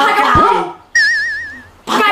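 A short warbling, whistle-like tone, an edited-in comedy sound effect, comes in about a second in after a brief spoken line. It wavers quickly and evenly in pitch for under a second and then stops.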